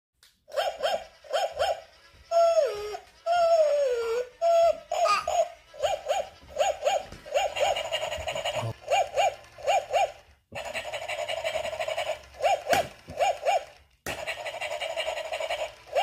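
Battery-powered plush walking toy dog playing electronic barks, short yaps mostly in quick pairs that repeat again and again. Between about two and five seconds in, a few longer whining calls fall in pitch, and in stretches a steady hum runs under the barks.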